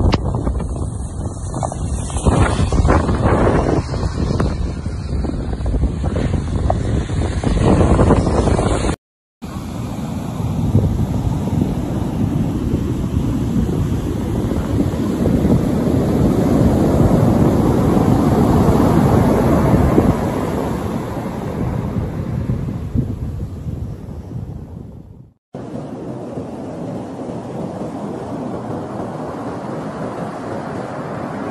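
Cyclone storm wind buffeting a phone microphone with a heavy, gusty rumble. It breaks off in two short silent gaps, about a third of the way through and near the end, and the last few seconds are a steadier rush with breaking surf.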